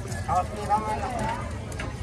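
Faint voices of people talking over a steady low background hum of market noise.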